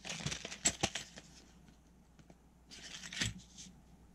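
A plastic-and-card fishing lure package being handled, crinkling with sharp clicks, in two bouts: through the first second and again around three seconds in.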